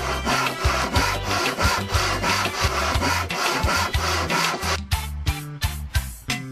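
Handsaw cutting a small block of wood, in rhythmic back-and-forth strokes that stop about five seconds in.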